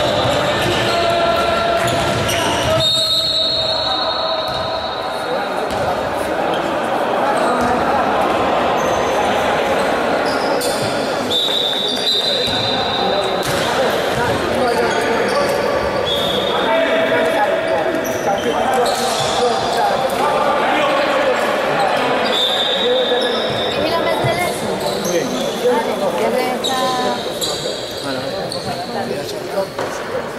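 Indoor basketball game in a reverberant sports hall: the ball bouncing on the wooden court, players' voices and shouts, and short high-pitched squeaks scattered throughout.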